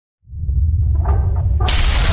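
Logo-intro sound effect of a stone wall breaking apart: a deep rumble starts just after the beginning, and about one and a half seconds in a loud shattering crash breaks in over it.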